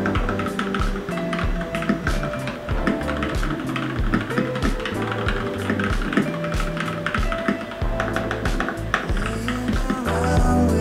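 Fast typing on a mechanical keyboard, a dense run of key clicks, under background music with a steady bass line.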